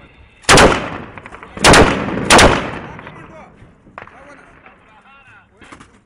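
Belt-fed machine gun firing three short, very loud bursts: the first about half a second in, then two more close together near two seconds in, each leaving a brief echo.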